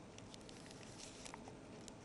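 Faint, irregular scratching and ticking of a pen writing on paper.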